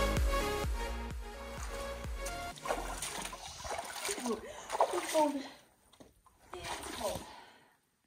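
Background music fading out over the first couple of seconds, then feet splashing and sloshing as a person wades through a shallow pool of still water, with a few short vocal sounds among the splashes.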